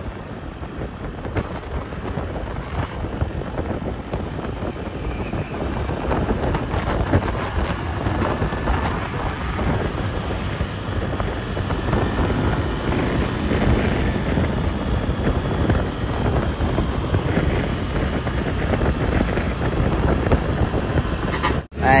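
Wind rushing over the microphone and road noise from a Honda Wave 110 underbone motorcycle ridden at about 60 to 90 km/h, its small four-stroke single-cylinder engine pulling underneath. The rush grows a little louder over the first few seconds as the speed rises.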